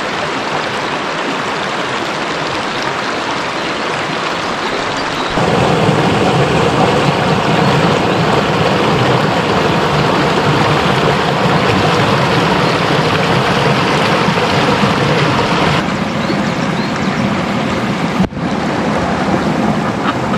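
Shallow, rocky mountain river rushing over stones: a steady, loud rush of water that grows louder about five seconds in and shifts suddenly in level twice near the end.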